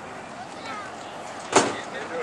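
A car door shutting with a single sharp thump about one and a half seconds in, over steady outdoor background noise and faint distant voices.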